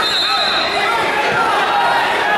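Spectators in a gymnasium shouting, many voices overlapping, with a thin steady high tone in the first second.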